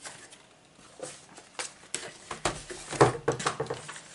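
Cardboard box and its packaging being handled and opened: a run of short crackles, taps and rustles that starts about a second in and grows busier toward the end.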